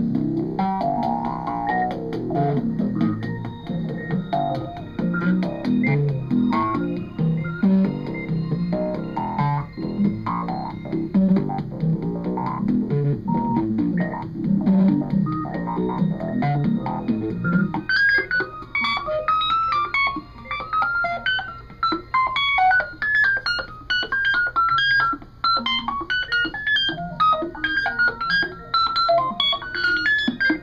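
Live improvised electronic music played on small tabletop electronic instruments through a mixer. A dense, busy run of low notes changes suddenly, about eighteen seconds in, to a quicker repeating pattern of high, bright notes over a steady low drone; the piece is noisy rather than ambient.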